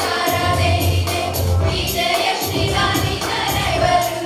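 Children's choir singing in unison to an electronic keyboard accompaniment with a steady beat and a strong bass line.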